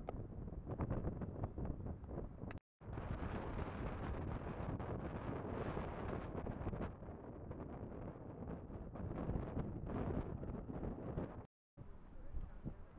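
Wind buffeting a small action camera's microphone on an exposed rooftop: an uneven low rumbling rush. It drops out to silence twice for a moment, once about two and a half seconds in and once near the end.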